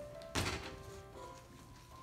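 Upright piano playing soft held notes, with one loud thunk about half a second in as a metal-framed chair is set down on the wooden stage floor.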